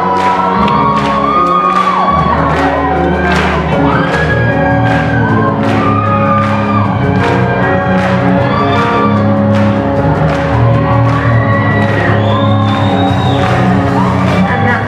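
Live pop-punk rock band playing loudly in a large hall: distorted electric guitars, bass and a drum kit, with a lead line of held notes that bend in pitch over steady drum hits.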